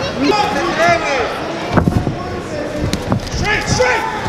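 Ringside sound of a live boxing bout: people shouting, with a few sharp thuds about two and three seconds in.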